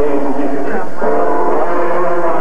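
Jazz vocal singing, with long held notes that slide between pitches.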